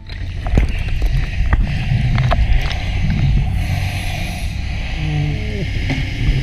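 Underwater sound at a commercial diver's helmet: a steady low rumble with scattered sharp knocks and clicks.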